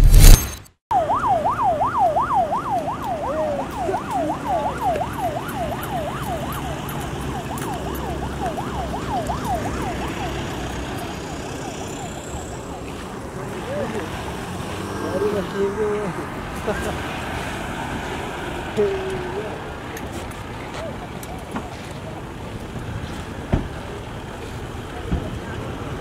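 A short, loud intro burst, then a vehicle siren on a fast yelp, wailing up and down about three times a second and fading away over the first ten seconds as a motorcade vehicle drives past. After that, a steady mix of road and crowd noise with scattered faint voices.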